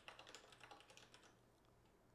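A few faint keystrokes on a computer keyboard in the first second or so, as a short command is typed.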